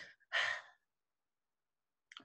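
A woman's short breathy sigh, about half a second long, as she composes herself while tearful.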